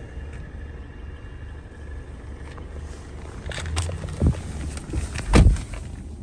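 Low steady rumble inside a parked car's cabin. In the second half come several knocks and clicks, and the loudest is a heavy thump shortly before the end.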